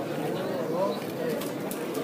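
Indistinct chatter of a crowd, many people talking at once at a steady level.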